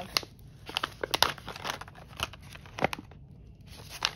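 Diamond-painting tool-kit pouch being torn open and handled, with a series of irregular sharp rips and crinkles and a short lull near the end.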